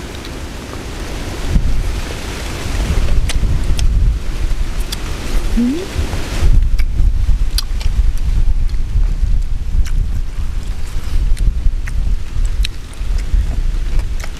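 Wind buffeting the microphone: a loud low rumble with a hiss that eases about six seconds in. Scattered short clicks and smacks of chewing, from two people eating squid, are heard over it.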